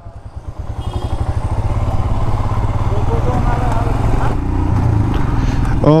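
Royal Enfield Himalayan's single-cylinder engine running as the bike rides along, a low, steady pulsing beat that grows louder over the first couple of seconds and then holds.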